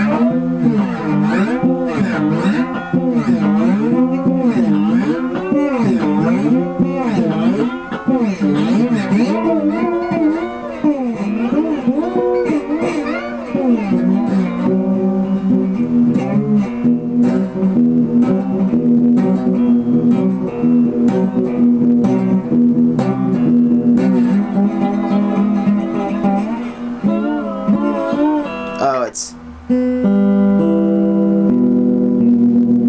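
Guitar music with a wavering, bending melody through the first half that gives way to steadier held notes about halfway through.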